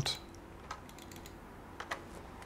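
A few sparse keystrokes on a computer keyboard, one about a second in and a couple close together near the end.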